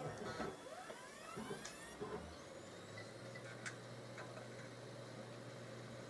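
Desktop PC, running with its side cover off, powering up: its fans and drives spin up with a faint rising whine over the first couple of seconds, then settle into a steady low hum with a few light clicks. It is booting through its start-up self-test.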